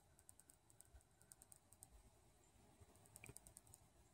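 Near silence, with faint, evenly repeated high-pitched ticking.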